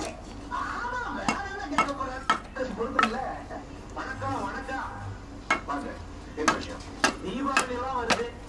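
A large knife blade being driven into green bamboo with a wooden block to split it: about eight sharp knocks at irregular intervals.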